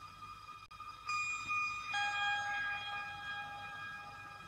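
Sustained electronic tones held as a chord, background synthesizer music. New notes enter about one second in and again about two seconds in, and the sound grows louder with each.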